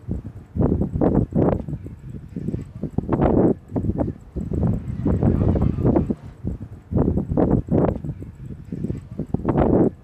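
Several people talking in a language the transcript did not catch, in uneven bursts of speech.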